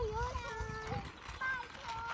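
A young child's high-pitched voice in drawn-out, sing-song phrases, some notes held steady and some gliding.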